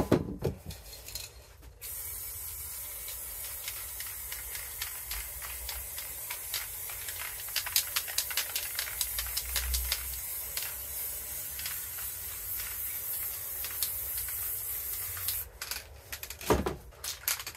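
Aerosol spray-paint can spraying in one long steady hiss that starts about two seconds in and cuts off just before the end, with light ticking through the middle. A few clicks and knocks come before the spray starts.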